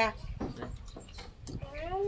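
Chopsticks and small bowls clinking a few times during a shared meal. A voice trails off at the start, and a short rising-then-falling call comes near the end.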